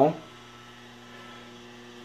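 The end of a spoken "Well," then a faint, steady hum in the room.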